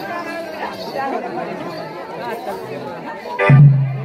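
Crowd chatter and voices, then about three and a half seconds in a loud drum beat starts suddenly: the drum band that accompanies Raut Nacha dancing.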